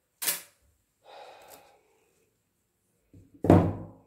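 Canvas being handled on wooden support blocks: a sharp click just after the start, a soft rustle about a second in, and a louder thunk near the end.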